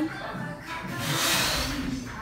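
Background gym music with a steady beat, and about a second in a drawn-out breathy rush: a lifter's forced exhale as he drives a heavy barbell back squat up out of the hole.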